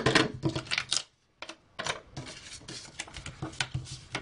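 Paper and cardstock strips handled and laid onto a card base on a desk: a run of light clicks and taps with paper rustle, broken by a brief pause about a second in.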